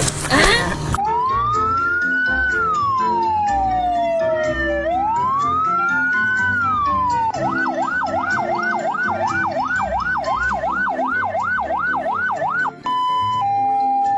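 Emergency siren sound effect laid over background music for the pretend ambulance: two slow rising and falling wails, then a fast repeating yelp, then a two-note hi-lo pattern starting near the end.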